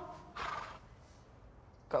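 A person's short, sharp breath, about half a second in, followed by quiet room tone.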